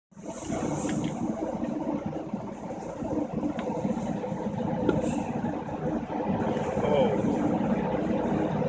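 Steady mechanical drone of running machinery, as on an offshore platform, with a few faint knocks over it.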